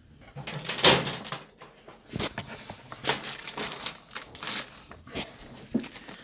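Small plastic XT60-to-XT30 connector adapters being handled against a parallel charging board: a string of light clicks and taps, the loudest about a second in.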